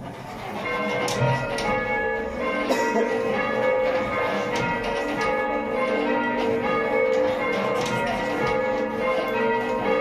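A small ring of church bells, tenor 7 cwt in A flat, being rung full circle on ropes, heard from inside the ringing chamber. The strikes follow one another in a continual stream of overlapping ringing tones, swelling up in the first second.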